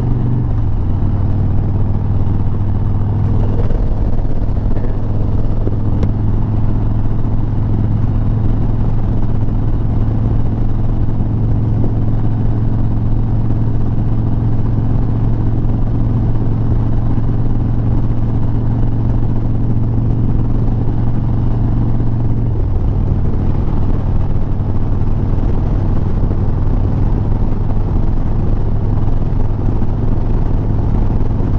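Harley-Davidson Sport Glide's Milwaukee-Eight V-twin running steadily at highway cruising speed, with a rush of riding wind. The engine note dips slightly just after the start and rises a little about 22 seconds in.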